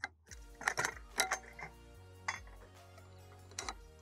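A handful of sharp metal clicks and clinks as a quarter-inch push pin is worked into the bracket of an aluminum bed leg, locking the leg upright, over soft background music.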